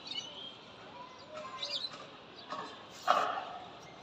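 Birds chirping in short, scattered calls, with a brief louder sound about three seconds in.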